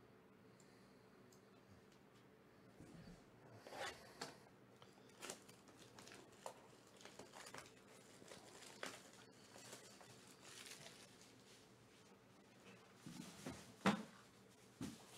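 Plastic shrink-wrap on a sports-card hobby box crinkling and tearing in scattered crackles as the box is handled, with a soft thump near the end.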